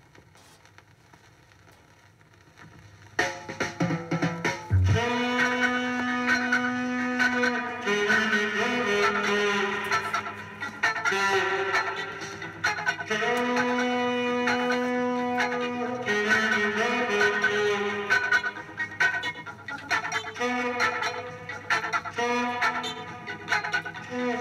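A 1970 reggae 7-inch vinyl single playing on a turntable. The first few seconds hold only faint surface crackle and hum from the lead-in groove, then the music starts suddenly about three seconds in.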